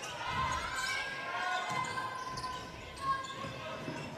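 A basketball being dribbled on a hardwood court in a large indoor hall, over the general murmur of the arena.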